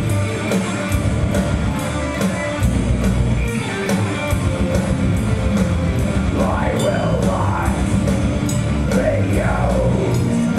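Metal band playing live: distorted electric guitars over a steady drum beat, with a few up-and-down sweeping guitar lines in the second half.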